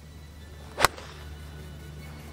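Golf iron striking the ball on a full fairway shot: one sharp, crisp click a little under a second in.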